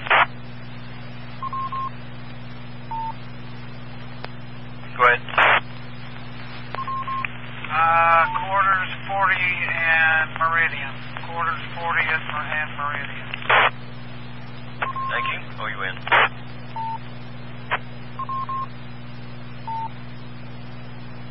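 Two-metre amateur radio repeater audio heard through a scanner: several short transmissions with brief, unclear speech, ending in short bursts of squelch noise, and several short beeps near 1 kHz, typical of repeater courtesy tones, over a steady hum.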